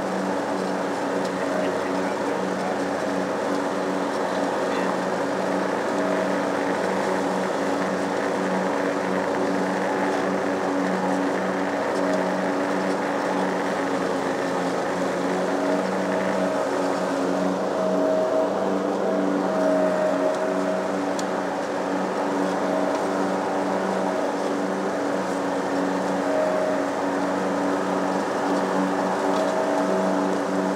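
Lawn mower's small engine running steadily at a constant speed while cutting grass.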